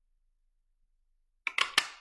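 Quiet, then about a second and a half in a handheld craft punch closes on cardstock with a quick series of sharp clacks, two of them loudest, as it is squeezed to punch out a shape.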